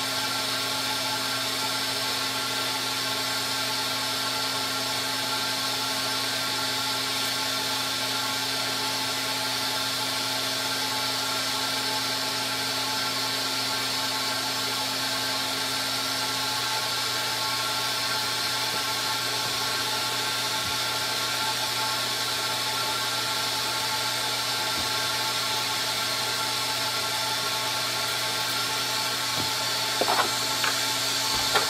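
Electric motor of a carpet-cleaning machine running steadily, a constant hum and whine with a hiss over it. One of its tones fades out about halfway through.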